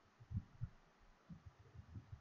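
Near silence broken by about five faint, short low thumps at uneven intervals.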